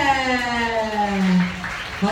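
A single sustained note from a live rock band slides steadily down in pitch for about a second and a half, then fades, after the final drum hits of the song.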